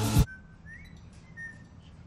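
Loud trailer music cuts off abruptly just after the start. What follows is a quiet room in which a caged bird gives a few faint, short whistled chirps, one of them rising.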